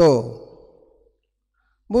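A man's speech: one drawn-out word that falls in pitch and fades out, then a pause of about a second of near silence before he starts speaking again near the end.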